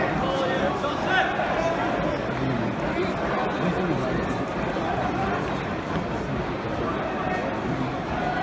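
Football crowd in the stands: many spectators talking at once in a steady chatter of overlapping voices.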